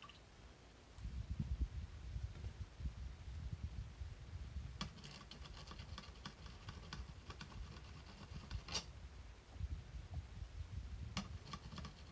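Faint scattered clicks and taps of a computer keyboard and mouse in short runs, over low dull thumps of handling on the desk.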